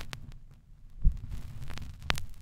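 Vinyl LP surface noise with no music: scattered crackling clicks over a low rumble, and a heavy low thump about a second in, typical of the stylus riding the record's run-out groove.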